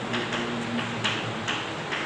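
Chalk writing on a chalkboard: a string of short, irregular taps, about three or four a second.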